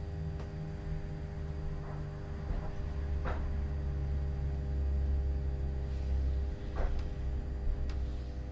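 Interior of a Class 317 electric multiple unit on the move: a steady low rumble from the running gear with a constant electrical hum, and a couple of short knocks, one about three seconds in and one about seven.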